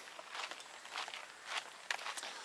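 Faint footsteps on an outdoor path: a few soft scuffs about half a second apart, with a sharp click near the end.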